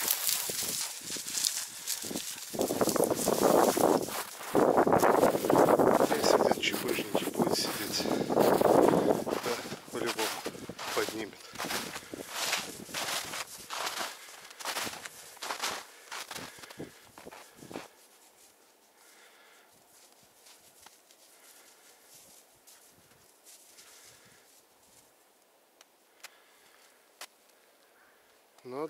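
Footsteps crunching through thin snow and dry grass, with brush rustling and crackling against clothing; it is loudest in the first third. About two-thirds of the way through the walking sound stops and it falls to near silence.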